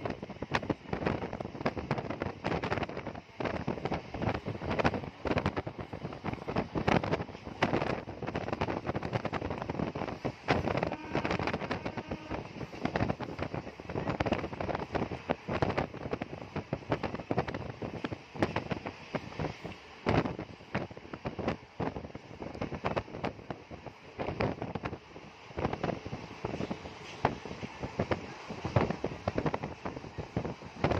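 Wind buffeting the phone's microphone at the open window of a moving train, a rough, irregular crackling rush with constant gusty pops and no steady rhythm.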